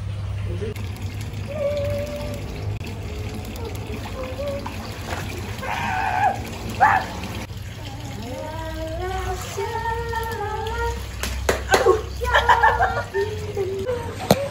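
Water pouring and splashing in a small swimming pool as people swim, with voices calling out now and then.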